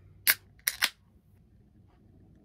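Aluminium drink can being opened: the ring-pull snapping and gas hissing out, three short sharp bursts within about half a second, about a quarter second in.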